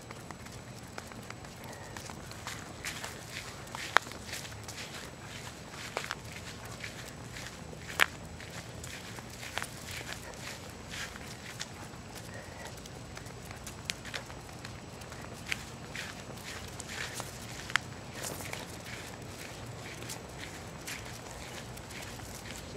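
Footsteps on a concrete sidewalk, with a sharp click now and then that stands out above the steps: a dog-training clicker.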